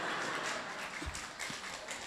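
Audience reacting with a steady wash of laughter and clapping that fades slightly toward the end, with a few faint knocks about a second in.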